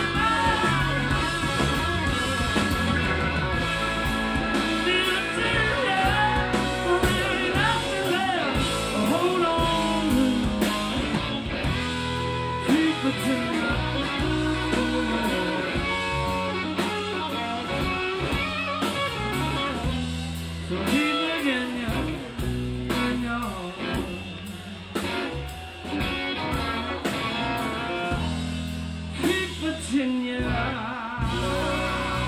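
Live rock band playing in a club: electric guitar over drum kit, bass and keyboards, with a lead line that bends and slides in pitch. The sound thins out and gets more uneven after about twenty seconds.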